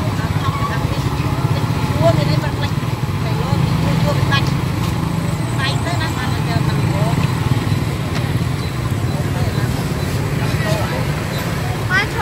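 Hot oil sizzling and bubbling in a large wok of deep-frying battered chicken, over a steady low hum of street traffic and faint background voices.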